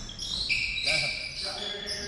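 A basketball dribbled on a hardwood gym floor, with several short high-pitched sneaker squeaks from players cutting on the court.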